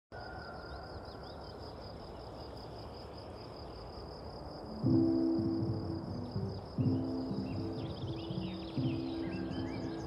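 Outdoor ambience of insects trilling in a steady pulsing high tone over a soft hiss, with birds chirping. About five seconds in, the song's intro begins: low guitar chords struck about every two seconds, each ringing out.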